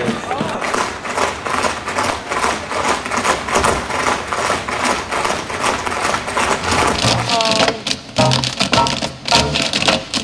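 Tap shoes striking a stage floor in rapid, dense clicks from many dancers. Music with a bass line comes in about seven seconds in.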